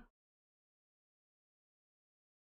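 Near silence: the very end of a spoken word, then dead silence.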